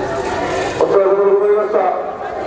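A man's voice calling out through a handheld megaphone in long, drawn-out syllables.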